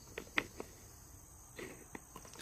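Quiet outdoor background with a faint, steady, high-pitched insect trill, and a few light clicks and taps in the first second.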